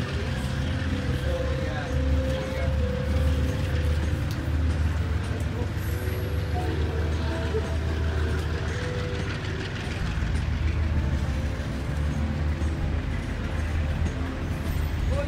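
KiwiRail passenger train rolling past at low speed: a steady low rumble from its diesel locomotives and the carriages moving on the rails.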